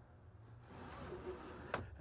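Faint rustling handling of a camper window's bug screen as it is raised and let go, with a single short click near the end.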